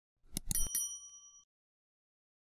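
Subscribe-button sound effects: a few quick clicks, then a single bright bell ding that rings for about a second before it stops.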